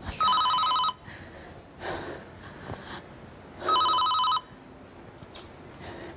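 Telephone ringing twice, each ring a short warbling electronic trill under a second long, about three and a half seconds apart.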